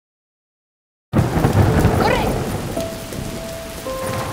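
Silence for about a second, then heavy rain starts all at once, steady, with a deep low rumble under it that eases a little toward the end.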